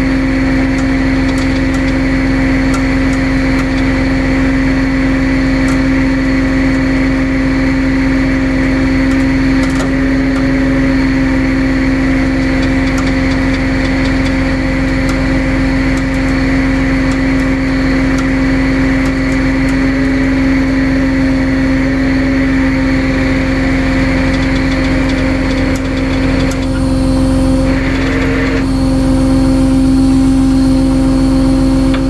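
Tow truck engine running steadily during a winch recovery, a constant hum with no change in pitch, getting a little louder near the end.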